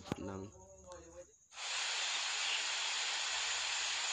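A steady, even hiss starts suddenly about one and a half seconds in. It is the soundtrack of a video clip playing back in the KineMaster editing app. A man's voice speaks briefly just before it.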